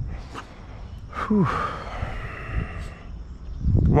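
A man's long, breathy "whew" sigh starting about a second in, falling in pitch at first and trailing off as an exhale.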